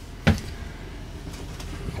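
An RV's DC refrigerator door shut once, a single short thump about a quarter second in, followed by a steady low hum.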